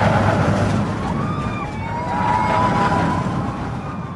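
Roller coaster train rumbling loudly along its track, with thin high tones gliding up and down over the rumble.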